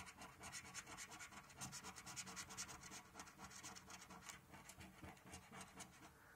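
Faint, rapid scratching of the silver coating off a lottery scratchcard, in quick repeated strokes.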